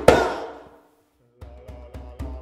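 Djembe solo: one loud hand stroke on the drum with a shouted vocal cry, ringing out into a silence of about half a second. Softer strokes then resume near the end.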